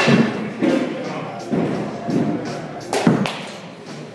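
Batting practice in an indoor cage: a series of sharp knocks and thuds, the loudest a crack of the bat meeting the ball about three seconds in as the hitter swings through.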